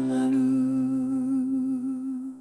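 Song vocal holding one long note with a gentle vibrato over a sustained backing chord.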